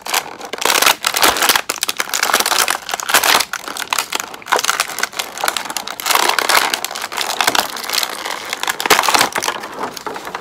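Clear plastic toy packaging crinkling and crackling continuously as hands work a toy out of it.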